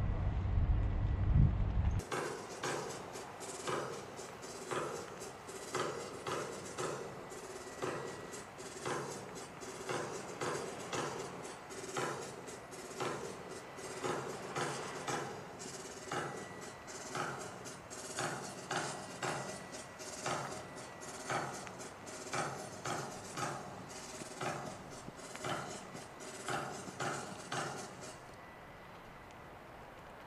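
A low rumble ends abruptly about two seconds in. It is followed by a steady run of short clicks and knocks at a marching pace, about one stronger beat a second with lighter clicks between, as the color guard marches off with the colors.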